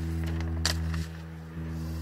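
A steady low hum made of several even tones, with one light click about two-thirds of a second in and a brief dip in level a little past the middle.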